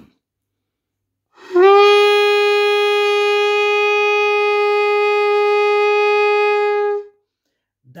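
Saxophone mouthpiece and reed played on the neck alone, without the instrument body: one long steady note held for about five and a half seconds, bending up slightly as it starts. It is blown with an even breath as a first-tone exercise.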